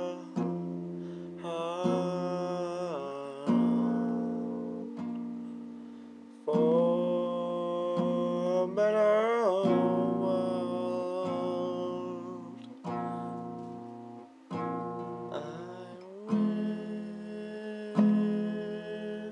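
Acoustic guitar played slowly, chords struck and left to ring out, each fading away before the next is played a few seconds later.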